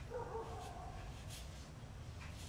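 A brief, faint whine lasting under a second near the start, with a few faint scratches of a brush on watercolour paper after it.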